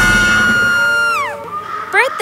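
Cartoon soundtrack music on a long held note that slides steeply down in pitch and cuts out about a second in, like a tape slowing to a stop. It is followed by quieter music with short whistle-like rising and falling effect sounds near the end.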